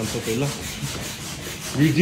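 Hand-operated air pump being worked to inflate an air mattress: a repeating rubbing hiss of air and plunger.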